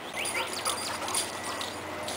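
A dog gives a couple of short, high-pitched rising whiny yips just after the start, during play. Scattered scuffing of paws over dry grass and straw runs alongside.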